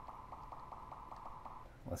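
Faint steady hum that stops near the end, just before a man starts to speak.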